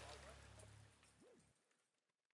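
Near silence: faint outdoor ambience with a low hum, fading out about one and a half seconds in.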